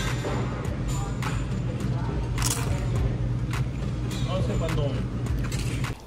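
Close-up crunching and chewing of a fried tortilla chip dipped in guacamole: a run of short, sharp crunches at irregular intervals over a steady low rumble.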